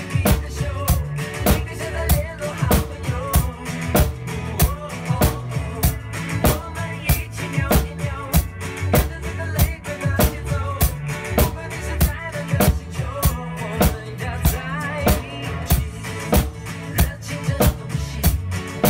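Acoustic drum kit played along to a recorded song, a steady beat of kick, snare and cymbal hits over the backing music.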